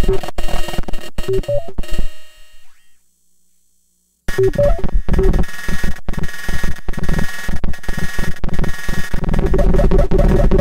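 Eurorack modular synthesizer playing a glitchy IDM pattern of electronic drums with a repeating pitched synth voice. About two seconds in the pattern thins and fades out, goes silent for about a second and a half, then comes back abruptly at full level.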